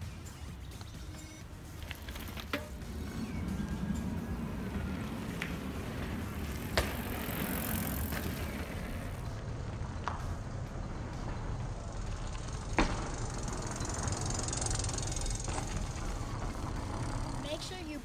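Mountain bikes riding down a dirt trail: a steady low rumble with several sharp knocks spread through.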